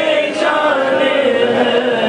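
A group of voices chanting together in a devotional chant, holding long sustained notes.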